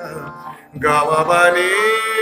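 A man singing Hindustani classical vocal in Raag Bihag at slow vilambit tempo over a steady drone; after a brief dip, his voice comes in loudly about a second in on a long held note with a slight waver.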